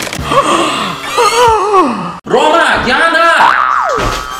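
Voices crying out with swooping, sliding pitches, broken by a brief cut about two seconds in.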